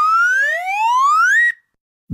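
Cartoon sound effect for growing bigger: a single pitched tone that rises steadily in pitch for about a second and a half, then cuts off suddenly.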